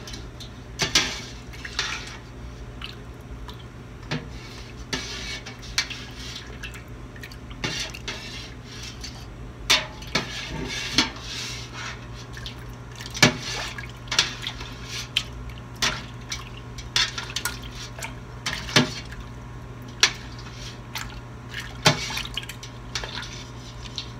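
Long metal spoon stirring cheese curds in warm whey in a stainless steel stockpot: liquid sloshing, with irregular clinks and taps of the spoon against the pot's side and bottom, under a steady low hum. The curds are being warmed toward 115 degrees and pressed against the pot's side so they knit together for mozzarella.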